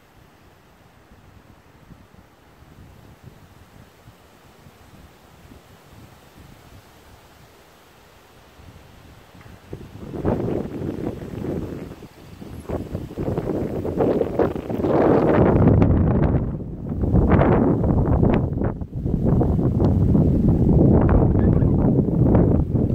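Faint outdoor quiet for about the first ten seconds, then wind buffeting the microphone in loud, uneven gusts that grow stronger and last to the end.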